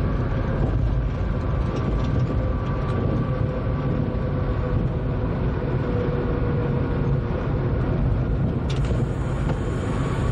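Train running steadily along the track, heard from inside the driver's cab: an even rumble with a faint steady whine. A thin high tone comes in near the end.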